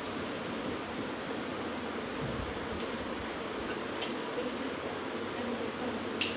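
Steady, even room hiss like a running fan, with faint scratching of a marker writing on a whiteboard and a light tap about four seconds in.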